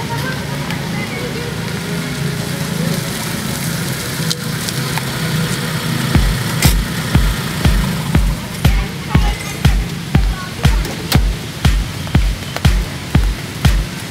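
Electronic dance music with a steady opening, into which a kick-drum beat of about two strokes a second enters about six seconds in.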